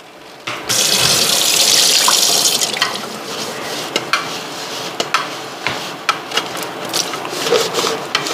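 Kitchen tap turned on about half a second in, water running into the sink. The flow is loudest for the first two seconds, then runs on more softly, with small clinks of things handled under it.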